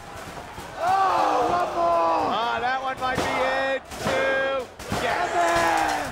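A wrestling commentator shouting in long, drawn-out excited yells over live match audio, with a few sharp thuds about three to four seconds in.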